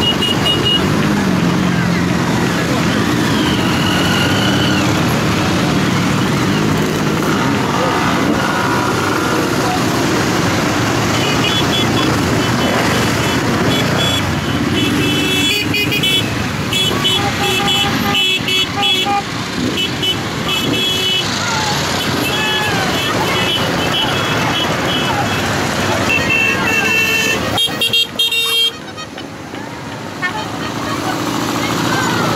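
A procession of motorcycles riding slowly past, their engines running. Many horns beep in short repeated toots, most often in the second half.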